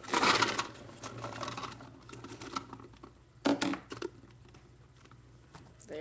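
A homemade paintball speedfeed, made from a tennis-ball lid and paper, is handled against a plastic paintball hopper close to the microphone: a loud knock and scrape at the start, irregular rattling, then a few sharp knocks about three and a half seconds in.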